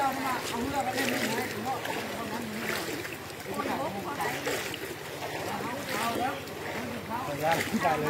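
Several voices talking in the background over the wash of people wading through knee-deep floodwater, with wind on the microphone.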